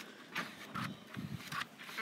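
Scissors cutting through a large sheet of paper: a few faint, irregular snips and paper rustles.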